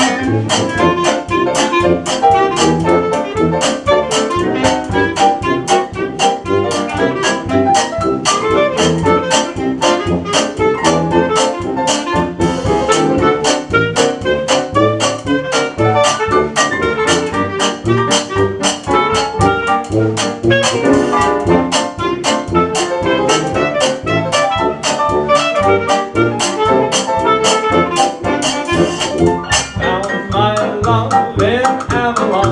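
Small jazz band playing an instrumental chorus: clarinet lead over drum kit, tuba and piano, with a steady beat.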